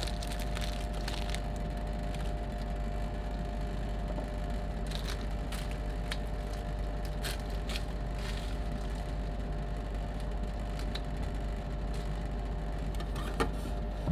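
Steady hum of a rolled-ice-cream machine's refrigeration running under its steel cold plate. Foil candy wrapper crinkles in the first second or so, there are a few faint ticks in the middle, and a single knock comes near the end.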